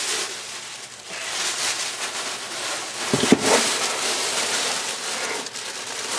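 Thin plastic shopping bag rustling and crinkling as it is handled, with a short bump about halfway through.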